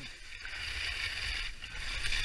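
Skis hissing and scraping over packed snow during a fast descent, getting louder about half a second in, with wind rumbling on the helmet-camera microphone.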